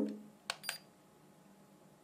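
Two quick plastic button clicks on a Heliway 913 GPS quadcopter's handheld controller, the second with a brief high beep: the Sport button being pressed to start the IMU (gyro) calibration.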